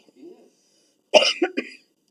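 A single cough about a second in, sharp and loud.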